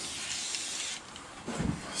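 Aerosol can of anti-rust spray hissing through its straw nozzle in a burst that stops about a second in, followed by a brief low thump near the end.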